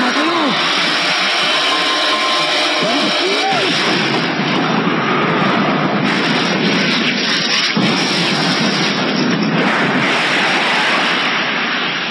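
A loud, steady rushing roar from an anime boxing fight's soundtrack as the two boxers close in and trade punches, with a few brief rising-and-falling tones in the first few seconds.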